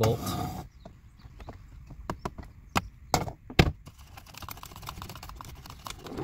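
Ratchet wrench and socket loosening a 10 mm bolt: a run of uneven metal clicks, with a few louder knocks in the middle and finer, quicker clicks near the end.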